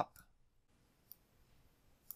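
Two brief computer mouse clicks about a second apart, the second the sharper, over quiet room tone.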